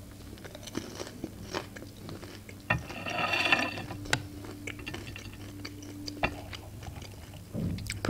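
Close-miked chewing of pan-fried pelmeni: scattered crunches and wet mouth clicks. A louder, noisier stretch of chewing comes about three seconds in.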